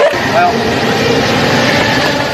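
Steady running noise of a vehicle engine with street noise, and a brief voice about half a second in.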